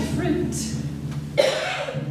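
A soprano's voice in half-spoken, recitative-style opera singing: short breathy phrase fragments, with a sudden attack about halfway through, over low sustained chamber-orchestra tones.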